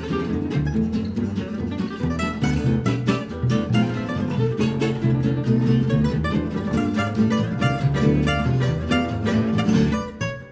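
Gypsy-jazz trio playing: an oval-hole acoustic jazz guitar picking a fast melody over a strummed rhythm guitar and a plucked double bass walking underneath.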